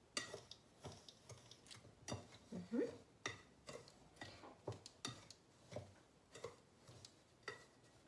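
Wire whisk stirring dry semolina, coconut and milk-powder mix in a glass bowl. The wires tap lightly against the glass about twice a second, faintly, with one short rising tone near the middle.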